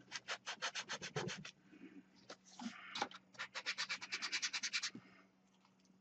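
Crumpled aluminium foil crinkling as fingers squeeze and smooth it into a compact egg shape, in two quick runs of crackles, the second starting about halfway through.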